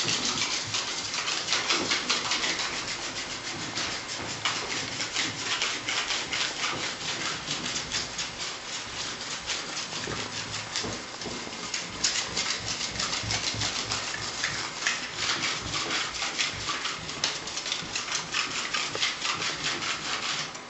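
Steel knife burnishing Venetian plaster: rapid, short strokes of metal scraping over the hardened plaster, several a second, polishing the surface to a gloss.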